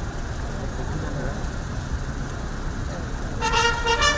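A low, steady rumble of idling cars with faint voices. About three and a half seconds in, a brass band starts playing held notes.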